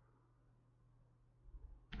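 Near silence: faint room tone, with a brief faint low sound near the end.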